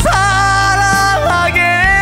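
A man singing long held notes of a slow trot ballad over band accompaniment, the melody sliding up near the end.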